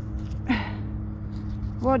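A woman's short breathy vocal sound, falling in pitch, about half a second in, over a steady low rumble and faint hum. Near the end she starts to speak.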